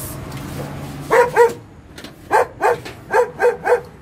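A house dog barking at strangers coming up to its home, seven sharp barks: two about a second in, then a quick run of five in the second half.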